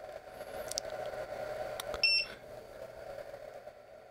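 A single short electronic beep from a smart battery charger about two seconds in, over the faint steady hum of the charger's small cooling fan.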